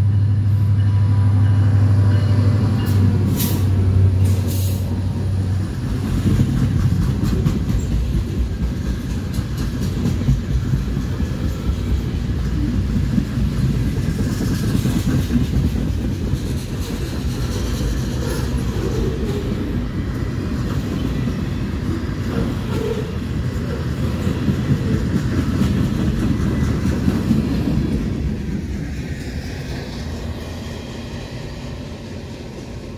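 A CSX diesel freight locomotive passes at speed with its engine running as a steady low drone, which fades after about five seconds. After that comes the continuous rumble and clatter of loaded freight car wheels rolling over the rails.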